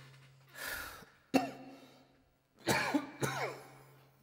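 A man clearing his throat: a sharp breath, a short click-like clear about a second and a half in, then two short throaty clears near the end.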